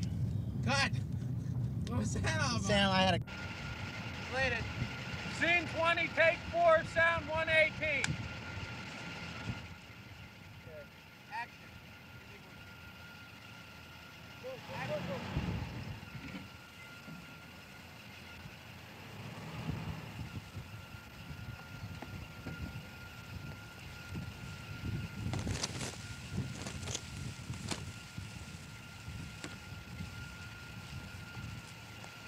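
Old sedan's engine running, first heard loud from inside the cabin and stopping abruptly at a cut, then quieter low swells as the car creeps along a rough dirt track, with a faint steady high tone underneath.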